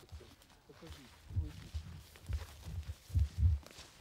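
Footsteps on a grassy, leaf-littered forest floor: dull, deep thumps at an uneven pace, with a faint voice in the background during the first second and a half.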